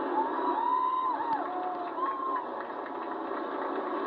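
Pure stock race cars running as a pack on a dirt oval, a steady engine din with one engine note rising, holding and dropping away about half a second in and briefly again at two seconds.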